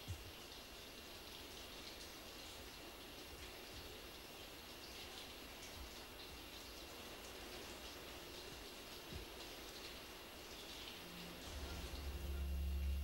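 Faint water dripping in a limestone cave: a soft, even hiss with scattered light drip ticks.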